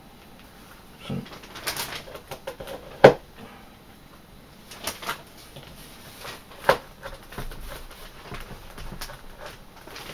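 Small knife trimming the edges of a leather sheath piece on a cutting mat: light scraping and slicing, with several sharp knocks of the blade and hands on the bench. The loudest knock comes about three seconds in, another near seven seconds.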